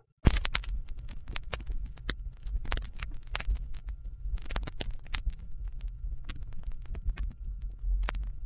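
A turntable stylus tracking the silent groove of a vinyl LP: scattered clicks and pops of surface noise over a low rumble. It starts suddenly just after the beginning.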